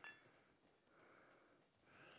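Near silence, with one faint, short metallic clink that rings briefly right at the start.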